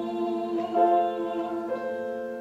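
Solo female voice singing long held notes, moving to a new note about half a second in and again near the end.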